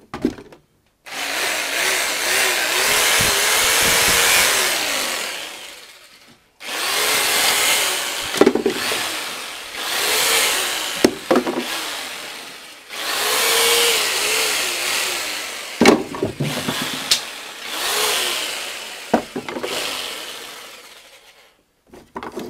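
Corded Mac Allister jigsaw cutting MDF in four long runs, its motor pitch dipping and recovering as the blade bites. Sharp knocks come between the cuts.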